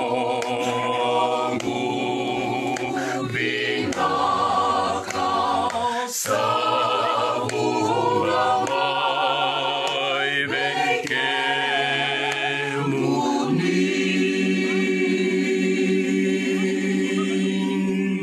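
A small group of men and women singing a Fijian hymn unaccompanied in harmony, with a low bass line under higher voices. It closes on one long held chord over the last few seconds.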